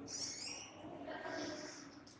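A swinging metal door's hinge creaking in a drawn-out tone as the door moves.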